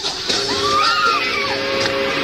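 Live band music in a large arena. About a third of a second in, a sustained chord starts, and a higher note arcs up and back down over it.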